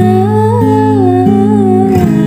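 A woman singing one long, wavering note without clear words, over sustained acoustic guitar chords.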